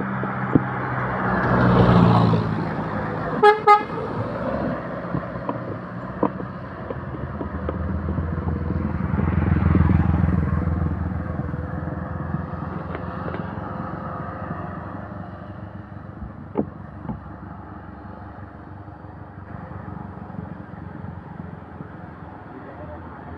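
Road traffic passing close: a van and light truck go by about two seconds in, followed by two quick horn toots. A truck engine then swells to its loudest around ten seconds in and fades as it moves away.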